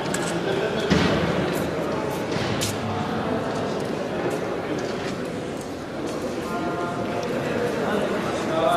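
Indistinct voices echoing in a large sports hall, with scattered knocks and clicks; the loudest is a thud about a second in.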